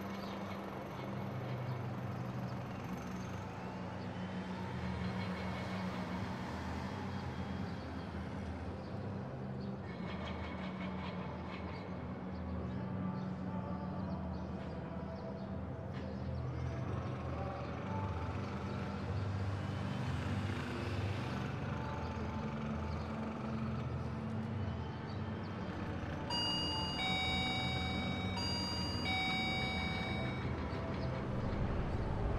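Steady low rumble of background noise that swells twice, like something passing. Near the end comes a short run of high electronic beeping tones at several pitches.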